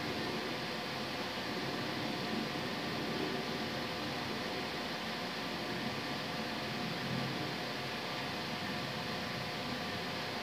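Steady background hiss with a faint hum of a few steady tones, like a fan running; no distinct clicks or knocks stand out.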